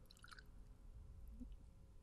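Near silence, with a faint, brief trickle of bourbon poured from the bottle into the metal shaker top early on.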